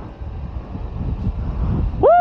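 Small single-cylinder motorcycle ridden at road speed: a steady low engine rumble under wind buffeting the helmet-mounted microphone.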